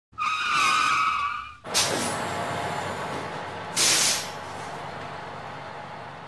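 Bus sound effects: a high brake squeal, then a sudden loud air-brake hiss that settles into a steady rumble, and another short sharp hiss of air brakes about four seconds in.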